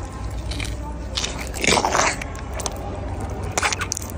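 Elephant biting into and crunching a raw carrot, with a few crunches. The loudest cluster comes about a second and a half to two seconds in.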